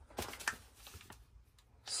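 A hand brushing and patting a paper-wrapped case of fireworks: a few faint taps and rustles, most of them in the first half-second, then near quiet.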